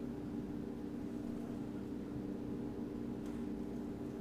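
Steady low background hum, with one faint click about three seconds in.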